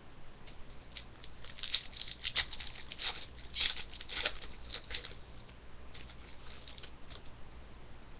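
Foil trading-card pack wrapper crinkled and torn open by hand, a run of sharp crackles starting about a second in, loudest in the middle and dying away near the end.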